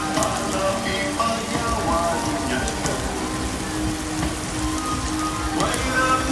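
Pork belly and sausages sizzling on a hot stone-slab griddle, with a few clicks of the metal knife and tongs against the slab.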